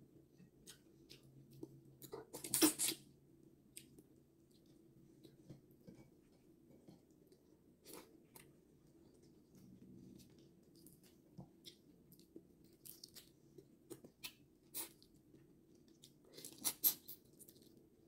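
Close-up eating sounds: whole shrimp shells cracked and peeled by hand, and chewing. Scattered short crackles and clicks, the loudest about two to three seconds in and again a second or so before the end.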